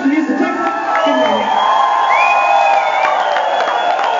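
Concert audience cheering and whooping as the band's final chord dies away at the end of a live soul song.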